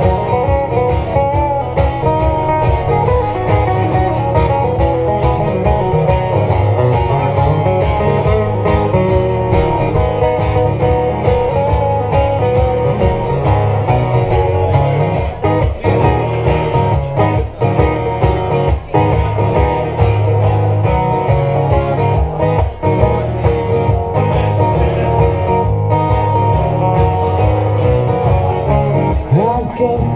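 Two acoustic guitars strummed together in a steady rhythm, an instrumental passage with no singing.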